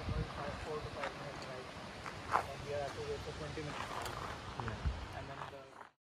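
Indistinct voices of people talking, with wind rumbling on the microphone and a few light knocks. The sound cuts off abruptly just before the end.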